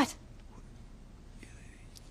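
The end of a spoken "What?" at the very start, then quiet room tone on a TV drama soundtrack, with a faint breath or whisper shortly before the end.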